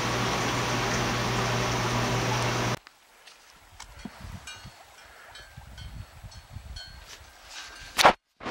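Steady running-water and pump noise with a low hum from a hydroponic grow setup, cutting off suddenly about three seconds in. After that come faint scattered rustles and soft knocks from horses moving over snowy ground.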